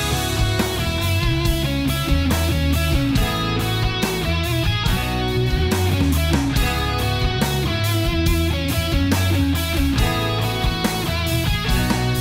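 Instrumental rock band playing: electric guitar over bass and drums, an acoustic-style arrangement played on electric instruments.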